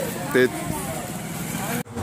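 Steady street noise with a vehicle engine running, under one short word of a man's voice; it cuts off suddenly near the end.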